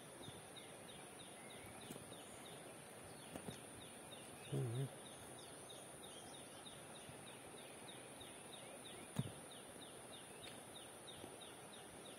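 Faint outdoor ambience with a steady run of short, high, falling chirps from unseen wildlife, repeating several times a second. A brief low human grunt comes about four and a half seconds in, and a single light click near nine seconds.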